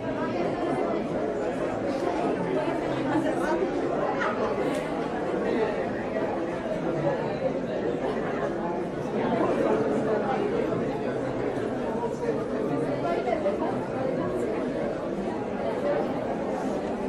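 Steady, indistinct chatter of many shoppers' voices blending into a general murmur in a large store.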